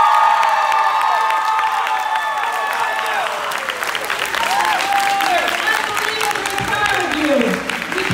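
A crowd of students cheering and applauding. High voices are loudest at the start and thin out, while the clapping carries on throughout.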